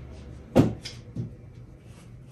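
Painting gear being handled and set down at the easel: a sharp knock about half a second in, then two softer knocks.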